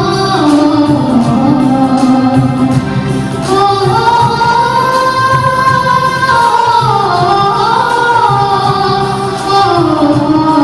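A woman singing a Kashmiri patriotic song (tarana) over instrumental accompaniment, in long held notes that glide up and down.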